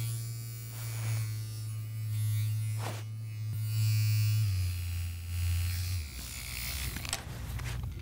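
Handheld electric vibrating massager buzzing steadily, its low hum dropping in pitch in two steps, about halfway through and again near the three-quarter mark.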